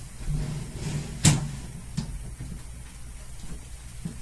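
Bumps and knocks of things being handled, with one sharp clack about a second in, the loudest sound, and a lighter knock a second later.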